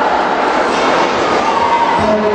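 Loud, steady din of many voices in a large sports hall, overlapping shouts and crowd noise with no single voice standing out.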